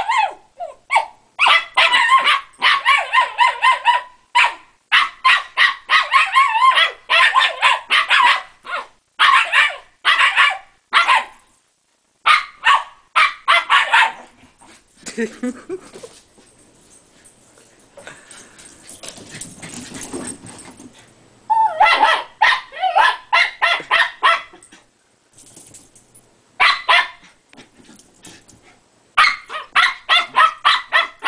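Shiba Inus barking and yipping in play, in rapid clusters of short high-pitched barks, with a lull of several seconds about halfway through.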